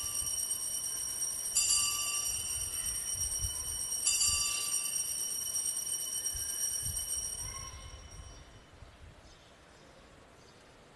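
Altar bells rung at the elevation of the host during the consecration: already ringing at the start, struck again about one and a half and four seconds in, each time with bright high ringing that lingers, fading away over the last couple of seconds.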